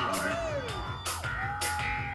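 Live rock band playing, recorded from among the audience, with a steady drum beat under the band.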